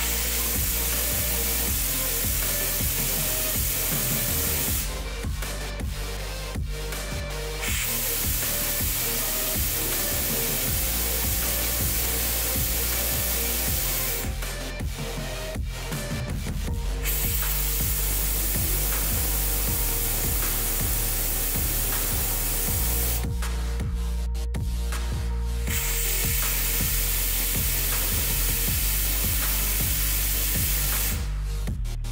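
Background music with a steady beat, over which compressed air at about 7 bar hisses through a small 3D-printed air turbine driving a propeller. The hiss comes in four runs of several seconds each, with short breaks between them.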